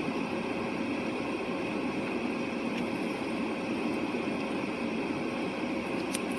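Steady, even hum and hiss inside a stationary car's cabin, from the idling engine and the ventilation fan running.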